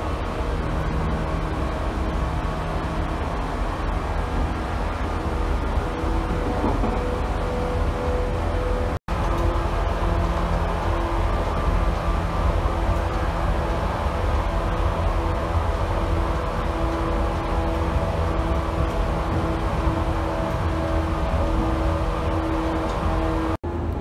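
Running noise heard inside a JR West 113 series electric train: a steady low rumble with faint humming tones over it. The sound cuts out for an instant twice, once about nine seconds in and once just before the end.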